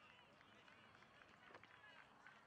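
Near silence: faint, distant voices of players and spectators on an outdoor soccer field, with a faint knock about one and a half seconds in.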